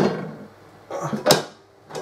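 Panels and side rails of an instrument case knocking and sliding against each other as they are handled and fitted together, with a sharp clack about 1.3 seconds in.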